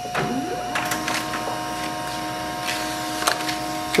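Pantum P2506W monochrome laser printer printing a test page. It starts with a short rising whine, then runs with a steady whir and hum, with a few sharp clicks as the sheet feeds through.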